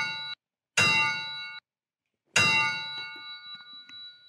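Title-card sound effect: a series of bell-like metallic hits. One lands about three-quarters of a second in and another a little past the middle. The earlier hits cut off short, and the last one rings out and fades over about two seconds.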